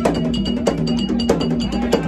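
Ceremonial percussion music: drums with a metal bell struck in a steady pattern of about three strokes a second, each stroke ringing.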